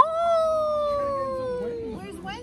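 A person's voice holding one long drawn-out note of about two seconds that slides slowly down in pitch, a playful mock howl rather than speech.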